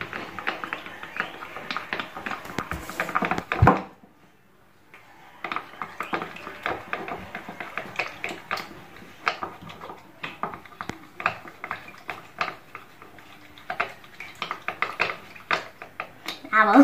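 A mixing stick stirring and scraping a slime-kit mixture that is not yet slimy in a plastic bowl: quick, irregular clicks and scrapes against the bowl. There is a heavier thump near four seconds, then a short pause before the stirring resumes.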